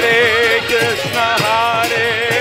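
Kirtan music: a wavering, ornamented singing voice over a harmonium's steady chords, with mridanga drum strokes and brass hand cymbals (karatalas) keeping the beat.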